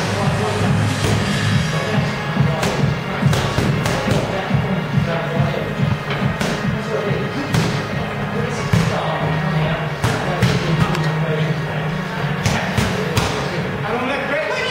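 Background music playing, with gloved punches smacking into focus mitts now and then at irregular intervals.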